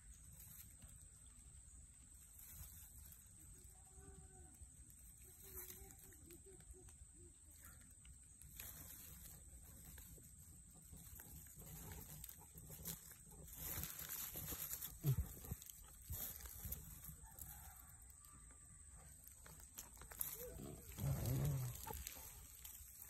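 Faint outdoor background with rustling of dry grass, and a few short, low voice-like sounds, the loudest near the end.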